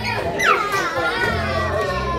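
Children playing and calling out, with music in the background. About half a second in, a high child's voice cries out and then holds a long, slowly falling note.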